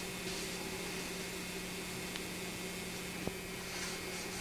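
Steady low hum and hiss, with a few faint light ticks and brief soft rustles of fingers working a sheet of shading film onto a paper comic page.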